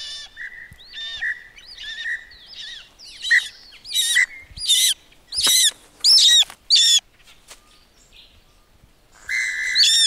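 A hawk calling: softer chirping notes over a steady high tone in the first few seconds, then a run of about six loud, short cries roughly two-thirds of a second apart.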